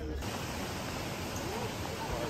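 A steady, even rushing hiss that starts suddenly just after the beginning, with faint distant voices under it.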